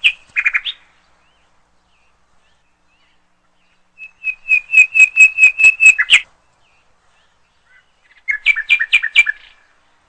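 A bird singing in three phrases of rapid, evenly repeated high chirps, about five or six a second: a short phrase at the start, a longer one of about two seconds in the middle, and another short phrase near the end, with silence between them.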